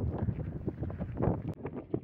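Wind buffeting a phone microphone: an uneven low rumble that rises and falls in gusts.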